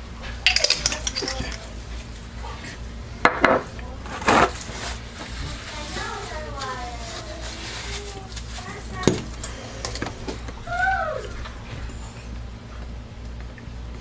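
Scattered knocks and clinks of a stainless-steel stick blender shaft bumping against a plastic tub of soap batter as it is stirred by hand with the motor off, with the loudest knocks a little after three and four seconds in and another around nine seconds.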